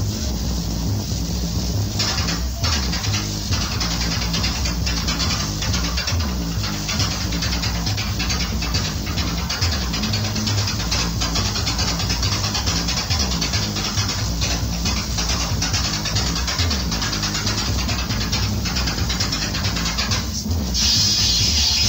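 Roots reggae dub played loud through a sound system in a live recording: a heavy, repeating bassline with a steady drum beat over it and little treble.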